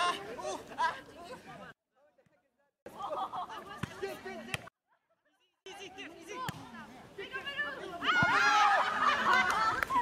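Several young people chattering, calling out and laughing, cut off twice by short spells of dead silence about two and five seconds in; the voices grow louder near the end.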